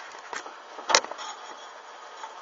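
Fire crackling: a faint hiss with a few small pops and one sharp crack about a second in.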